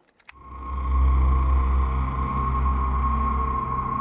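Two quick clicks of a light switch, then a low rumbling drone with a steady high tone swells in over about a second and holds: an ominous horror-film score drone.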